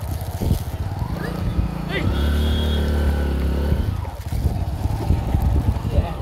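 A vehicle's engine running at low speed, with wind rumbling on the microphone. The engine tone holds steady for about two seconds in the middle.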